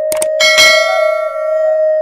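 Subscribe-animation sound effect: two quick mouse clicks, then a bright bell ding that rings out over about a second, as the cursor presses the notification bell. Soft sustained flute-like background music runs underneath.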